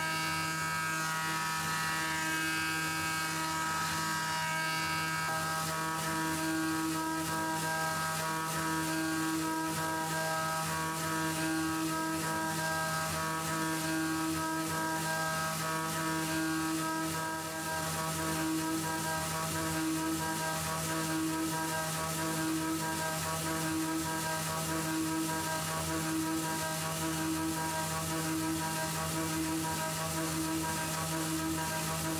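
Tormach PCNC 440 CNC mill's spindle running with a steady whine as a small coated end mill finish-cuts a curved aluminium surface. A tone in the cut pulses in an even rhythm that quickens, from about one pulse every second and a half to more than one a second near the end.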